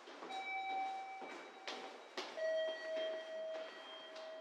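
Electronic two-note station chime: a higher tone held for over a second, then a lower tone held longer, over footsteps at a walking pace.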